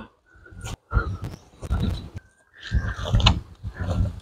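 Dry coconut fronds rustling and scraping in irregular bursts as an armful is carried, with footsteps and low bumps.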